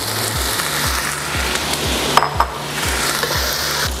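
Sausages, diced potatoes and bell peppers sizzling as they fry in a nonstick pan, a steady frying hiss, with background music carrying a regular low beat underneath.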